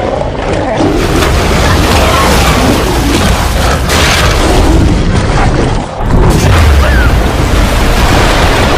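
Loud movie action sound effects: deep rumbling booms and crashing noise with no letup, dipping briefly just before six seconds in.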